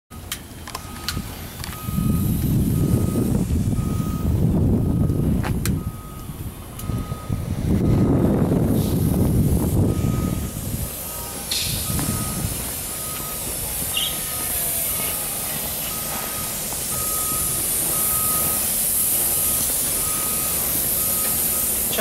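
A vehicle's backup alarm beeping at an even pace, one steady pitch. Two spells of loud low rumbling, the loudest sound, come in the first half, and a high hiss rises in the second half.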